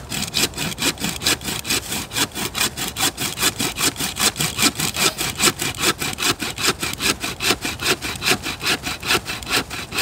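Homemade folding bucksaw cutting through a fallen log, with quick, even back-and-forth strokes of the blade rasping through the wood.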